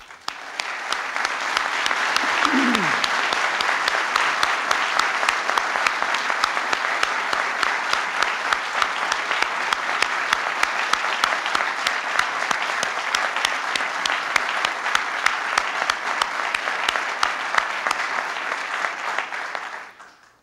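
Audience applauding steadily, fading out at the end.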